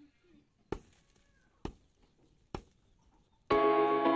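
Three strikes of a jembe hoe blade biting into the soil, a little under a second apart. Near the end, loud background music with sustained tones comes in.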